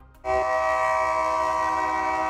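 Diesel freight locomotive's air horn sounding one long, steady chord of several notes, starting suddenly about a quarter of a second in.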